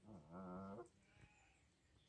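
A bar-headed goose giving a single nasal call, about three-quarters of a second long, that rises briefly at the start and then holds its pitch.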